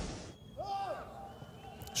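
The tail of a whooshing transition sound effect fades out in the first moment. Then comes quiet football-pitch ambience with one short, faint distant shout about two-thirds of a second in.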